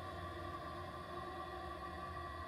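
Quiet background music: a steady held ambient chord with no beat.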